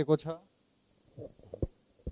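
A man's sentence ends, then a few short, dull low thumps from a handheld microphone being lowered and handled.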